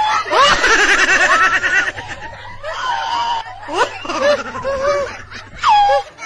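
People laughing loudly, with a burst of rapid, pulsing laughter from about half a second in, more laughing and calling after, and a high-pitched falling squeal just before the end.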